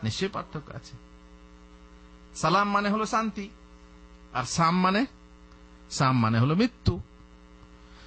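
Steady electrical mains hum on the recording, broken by a man's voice speaking in four short bursts with pauses of a second or more between them.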